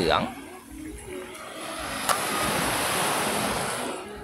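Sea surf washing onto a sandy beach: a steady rush that swells about a second in and holds. A single brief click sounds about two seconds in.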